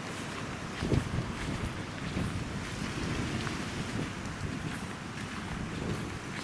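Wind buffeting the microphone in uneven gusts, a low rumble with a stronger gust about a second in.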